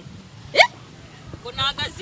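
A person's voice giving one short, sharp upward-sliding vocal sound about half a second in, followed by speech starting again.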